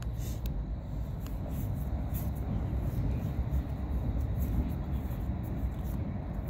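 A steady low outdoor rumble, with faint, scattered flicks of paper trading cards being slid and sorted by hand.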